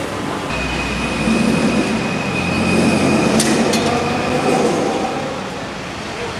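A light-rail (LRT) train passing close by: a low rumble builds, peaks about halfway, then fades, with a steady high whine in its first half.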